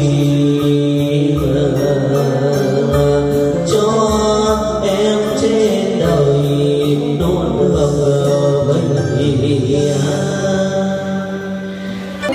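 Live Vietnamese funeral music: a keyboard holds a steady low drone under a slow, wavering lament melody sung into a microphone, loud through the amplification.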